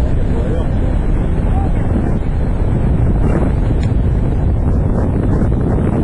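Wind buffeting the microphone on the deck of a moving ferry: a steady low rumble with the ship's running noise underneath.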